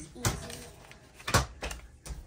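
A paper envelope being torn open by hand: two short, sharp rips about a second apart, the second the louder, with a little paper rustle after it.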